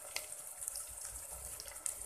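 Chopped shallots and garlic sizzling in hot oil in an electric rice cooker's pot: a steady hiss with scattered crackles. There are a few sharper crackles at the start as salt is poured in.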